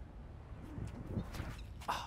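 Faint footfalls of a disc golfer's run-up on the tee, ending in a short, sharper scuff as the drive is thrown near the end, over a low outdoor rumble.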